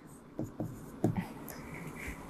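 Stylus writing on a digital whiteboard screen: faint scratching with a few light taps as a word is written.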